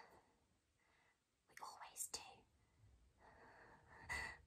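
Near silence: room tone, broken about a second and a half in by a woman's faint, brief whispery breath.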